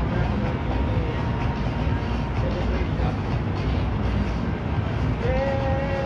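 Steady low rumble with people talking in the background, and a held voice-like note from about five seconds in.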